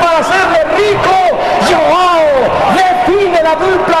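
A male football commentator's excited, shouted calling over steady stadium crowd noise.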